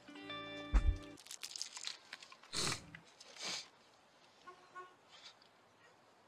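Film soundtrack: a few held music notes that stop about a second in, with a low thump, followed by a run of small clicks and two short rushing noises, then only faint sounds.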